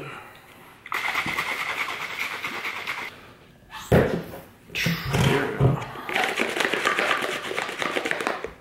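Plastic shaker bottle of pre-workout drink being handled and shaken. There are two spells of dense rattling noise, the first about two seconds long and the second longer, with a sharp knock between them about four seconds in.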